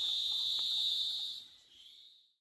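Insects chirring in a steady, high-pitched drone that fades out near the end.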